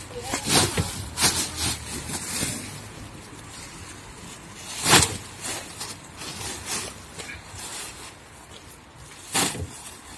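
Heavy black plastic bin bags full of horse manure being handled and shifted in a trailer: crinkling plastic rustles in separate bursts, the loudest about five seconds in.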